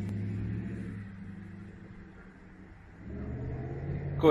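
Low rumble of road traffic, a car engine running on the street. It fades away through the middle and builds again about three seconds in.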